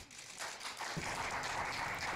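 Applause from a small group, fading in over the first half-second and then holding steady.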